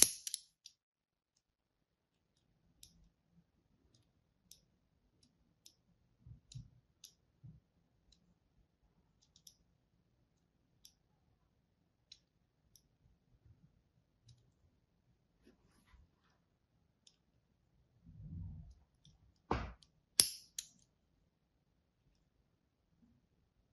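Thin craft-knife blade scoring lines into a bar of soap: sparse small clicks and scratches. A sharp click comes at the very start, and two more sharp clicks come about three-quarters of the way through.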